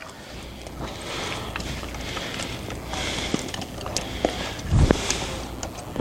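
Cables, plugs and equipment being handled to reconnect a pulled-out power cord: rustling and scattered clicks, with a loud thump near the five-second mark, over a steady low hum.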